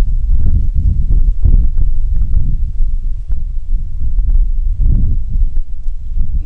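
Wind buffeting an open-air microphone: a loud, gusting low rumble with scattered soft pops.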